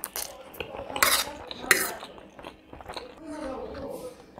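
A metal fork scraping and clinking against a ceramic plate as it twirls instant noodles, with about three sharp clinks in the first two seconds, over the softer mouth sounds of eating.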